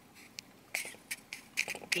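A few faint, scattered small clicks and short breathy hisses close to the microphone, about five in two seconds.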